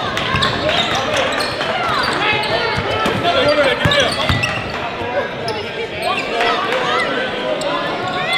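Live sound of a basketball game in a gym: a basketball bouncing on the hardwood court and sneakers squeaking in short chirps, over voices of players and spectators echoing in the hall.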